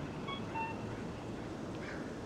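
Accessible pedestrian crossing signal sounding its two-note cuckoo-style tone: a short higher beep and then a lower one about a third of a second later, telling pedestrians that the walk light is on. Steady street and traffic noise runs underneath.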